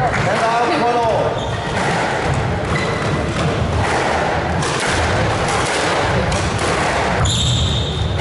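A squash rally: the ball is struck by rackets and smacks off the court walls again and again, and rubber soles squeak briefly on the wooden floor, over a steady murmur of spectators talking.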